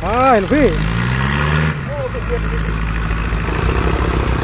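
John Deere 5050D tractor's diesel engine revving up under load, its pitch climbing for about a second and then holding at a steady high run, as the bogged tractor works its way out of the mud.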